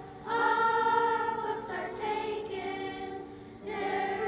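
Children's choir singing a slow piece in long held notes. A phrase begins just after the start, eases off briefly about three and a half seconds in, and the next phrase comes in just before the end.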